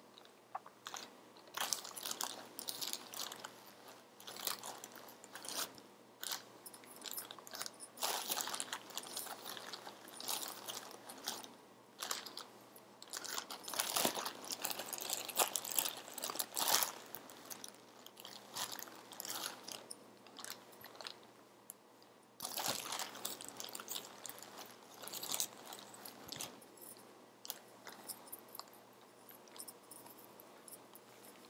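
Plastic bag of polyester fiberfill crinkling and rustling as hands pull out and tear off small tufts of stuffing, in irregular bursts with short pauses.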